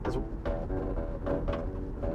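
Elastic cords strung across a BYD Atto 3's door pocket plucked like guitar strings, giving a quick run of low twanging notes, a bit like a bass. Steady low road rumble from the moving car lies underneath.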